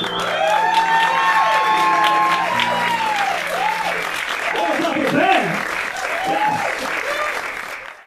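Audience applauding, with whoops and cheers rising and falling over the clapping; the sound cuts off abruptly at the end.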